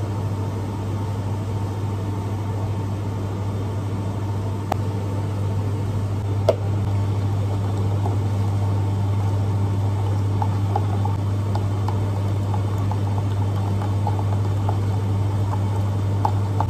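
Steady low hum of cafe equipment, with a few light clicks and small ticks from utensils, cups and a spoon stirring in a plastic jug.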